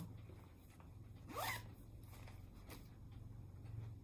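A zipper on a fabric project bag pulled once, briefly, about a second and a half in, with faint rustling of cloth being handled around it.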